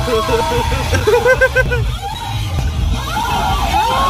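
Low rumble of a Toyota car running, heard from inside the cabin, under people's voices and a short run of what sounds like laughter about a second in.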